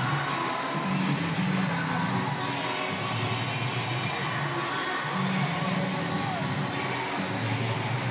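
Stadium PA music with a bass line stepping between notes, playing over the steady noise of a large ballpark crowd.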